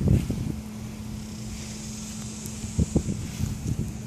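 Wind buffeting the microphone in irregular low gusts, heaviest at the start and again near the end, over a steady low hum.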